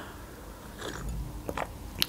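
Soft sipping and swallowing of a drink from a glass, close to the microphone, with a short click about one and a half seconds in.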